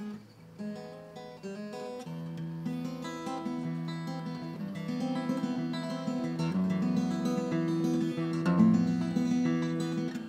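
Acoustic guitar playing a flamenco-style instrumental intro: plucked notes that start softly and build steadily into louder, fuller strummed passages.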